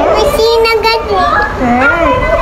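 Young children talking, with high-pitched, continuous voices.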